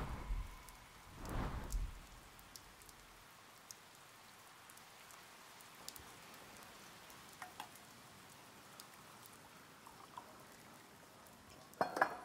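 Light rain: faint, scattered drips and ticks over a quiet background. A brief rustle comes about a second and a half in, and a sharper knock near the end.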